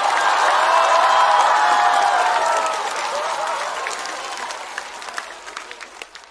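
Studio audience applauding, with a few voices calling out in the first half. The applause slowly dies away toward the end.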